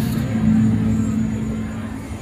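IGT Coyote Moon video slot machine playing its win sound while the credit meter counts up a line win: a steady low tone that fades out near the end, over casino background rumble.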